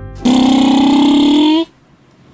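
A voice holds one long sung note that rises slowly in pitch for about a second and a half, then cuts off suddenly. Just before it, the last notes of electronic keyboard music die away.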